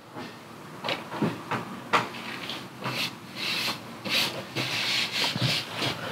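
Hands rubbing and sliding over a laminated tabletop, with a few light knocks and clicks scattered through.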